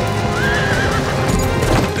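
A horse whinnies over music: one short, wavering high call about half a second in.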